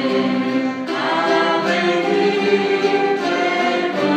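A choir singing with an orchestra of violins and flutes, in sustained chords that change about once a second.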